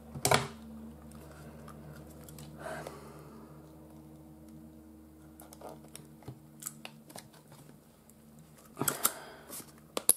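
Clicks and snaps of hand-held eyelet-setting pliers being handled and squeezed on card to set a metal eyelet: a sharp click right at the start, a few light clicks through the middle, and a quick run of clicks near the end.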